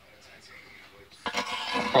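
A quiet pause in a small workshop, then about a second in a man starts speaking.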